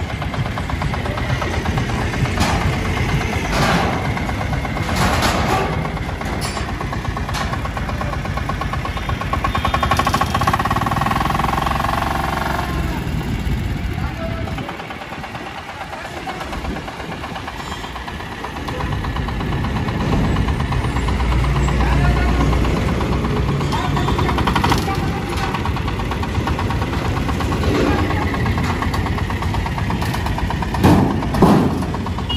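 Engine of a small tempo pickup running as it is driven backwards out of a car-carrier container and down the steel loading ramp. It drops away briefly around the middle and runs louder in the second half.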